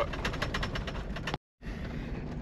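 Mercedes G-Class driving over a gravel mountain track, heard from inside the cabin: a low engine and road rumble with many small crackles and crunches of stones under the tyres. The sound drops out abruptly for a moment about a second and a half in.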